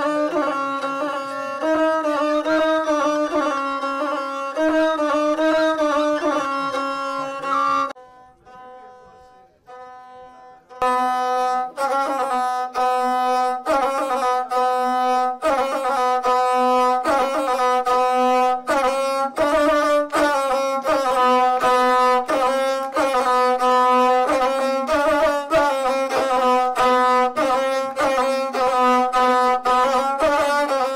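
Gusle, the single-string bowed Balkan fiddle, playing a short nasal melodic line. It breaks off for about three seconds, then resumes with a steady rhythm of about two bow strokes a second.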